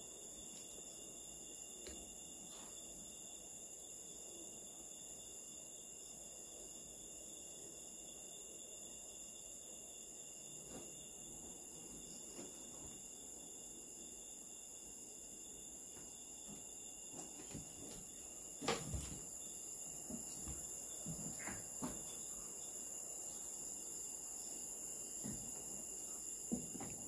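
Steady high-pitched chorus of night insects. A sharp knock comes about two-thirds of the way through, followed by a few lighter knocks.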